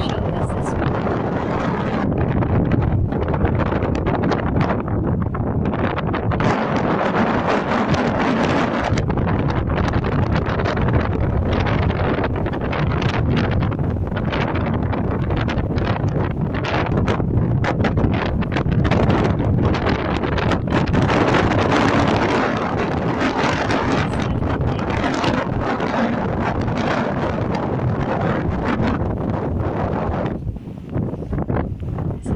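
Strong gusty wind buffeting the microphone: a loud, continuous rushing rumble that swells and eases with the gusts.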